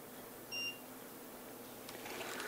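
Digital torque wrench giving one short, high beep about half a second in: its signal that the set torque of 4 N·m has been reached while tightening a shoe cleat bolt.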